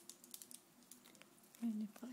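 Faint scattered clicks and taps of small objects being handled, then a brief murmur of a woman's voice near the end.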